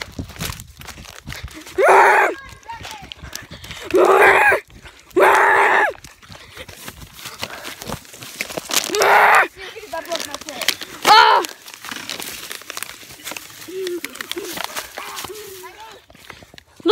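Children's short, high-pitched shouts and screams, about five of them, between stretches of footsteps and rustling leaves and twigs as they run through woodland undergrowth.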